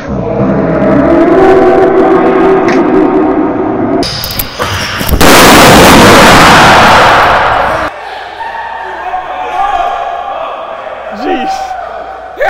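A very loud, distorted blast about five seconds in, lasting nearly three seconds and cutting off abruptly: a prank basketball exploding. People's voices before and after it.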